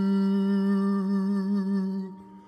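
Slow meditation music: a humming voice holds one long, steady low note with a slight waver, over a faint steady higher tone. The note fades out at the very end.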